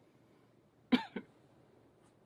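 A person coughing twice in quick succession about a second in, the first cough louder, over faint room noise.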